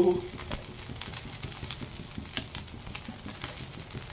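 Potato patties (aloo tikki) shallow-frying in a little oil on a nonstick tava: a low, steady sizzle with faint crackles. A few light clicks come from a spoon and spatula against the pan as a patty is turned over.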